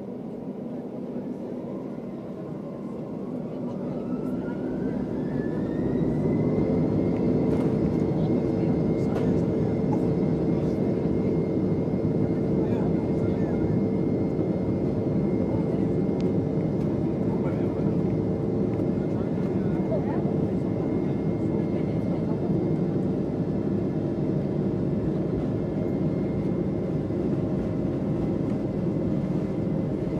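Embraer 195's GE CF34-10E turbofan engines heard from inside the cabin, spooling up to takeoff thrust with a rising whine over the first six seconds or so. The engines then hold a steady, loud roar as the jet rolls down the runway.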